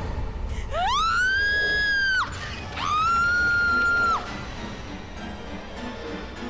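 Two long, shrill creature shrieks, a sound effect for a phantom winged beast. Each rises quickly, holds one high pitch for about a second and a half, then drops away, over dramatic background music.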